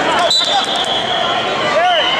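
Wrestling shoes squeaking on the mat, with a thud about a third of a second in as the wrestlers go down, over crowd voices and a steady high tone.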